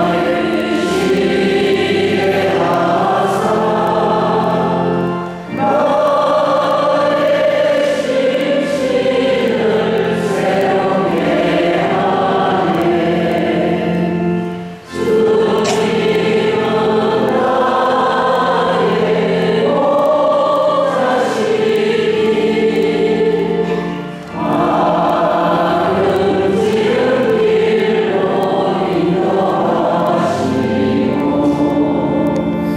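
A choir singing a slow hymn in long held phrases, breaking off briefly about five, fifteen and twenty-four seconds in.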